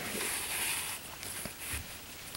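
Faint rustling of acrylic yarn being drawn through crocheted fabric with a yarn needle, with light handling of the piece.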